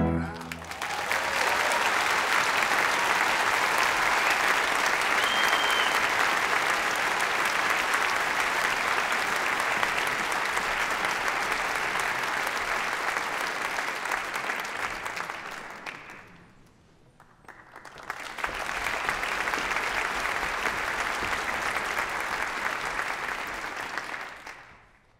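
Theatre audience applauding at length after an operatic aria ends. The applause drops away about sixteen seconds in, comes back about two seconds later, and fades out at the end.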